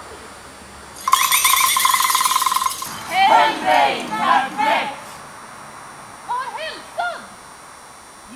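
About a second in, a loud buzzing trill holds one pitch for nearly two seconds and then stops abruptly. High shrieks and cries follow, each rising and falling, from several performers' voices, with a few more near the end.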